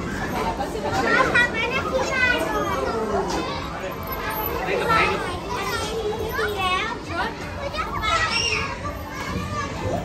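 Many young children shouting, squealing and chattering over one another as they play.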